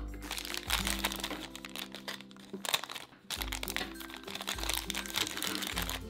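Glossy plastic wrapper crinkling and crackling as hands tear it open and work it off a toy, with a short pause a little past the middle.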